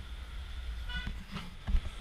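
Busy street ambience with a steady low rumble, a brief high-pitched toot about a second in, and a low thump near the end.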